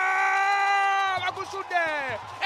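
Football commentator's long drawn-out shout of 'goal' as a goal is scored, one high held note lasting over a second, breaking into short cries falling in pitch near the end.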